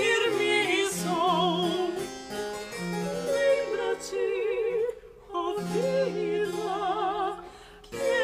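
Soprano and mezzo-soprano singing a late-18th-century Brazilian modinha as a duet, with vibrato, over a spinet continuo. The singing breaks off briefly between phrases about five seconds in and again near the end.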